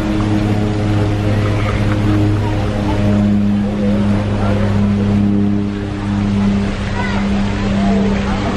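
Steady low hum of a cruise ship's machinery, heard on its open deck, with people talking in the background.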